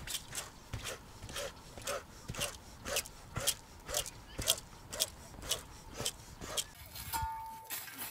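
Rapid rhythmic forced breathing from the belly, sharp breathy exhalations about twice a second as a breathing exercise (active pranayama).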